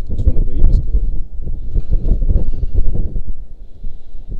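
Loud, uneven wind noise on the microphone, a low rumble that eases near the end, with indistinct talking mixed in.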